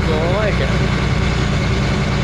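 Vehicle engine running steadily, a low drone heard inside the cabin while driving, with a person's voice briefly in the first moment.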